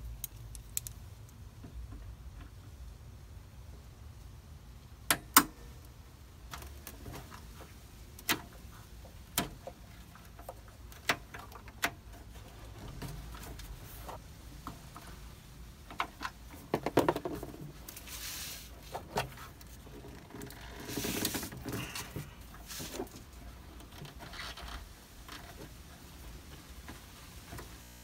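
Scattered sharp metallic clicks and knocks of hand tools and engine parts being handled, with a few short scraping, rustling noises around the middle.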